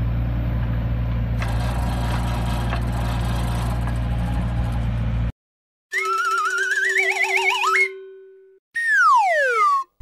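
A compact crawler excavator's engine running steadily while its auger attachment drills into soil, cut off suddenly about five seconds in. Then cartoon sound effects: a wavering whistle rising in pitch over a held tone, followed by a whistle gliding smoothly down.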